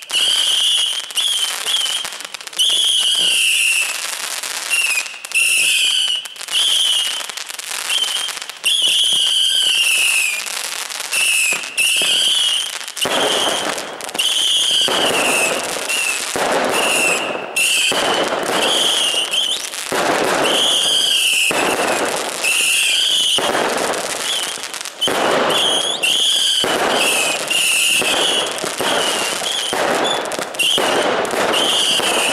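Rapid barrage of daytime fireworks, shot after shot of bangs, growing denser and heavier about halfway through. Over it a car alarm warbles again and again, set off by the blasts.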